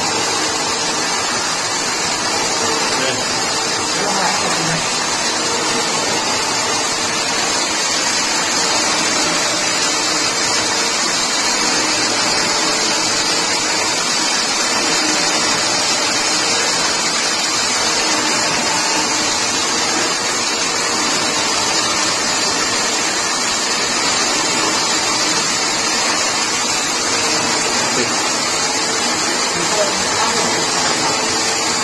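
Toroidal coil winding machine running steadily, its wire-carrying ring turning through a toroidal core, giving an even, unchanging rushing whir.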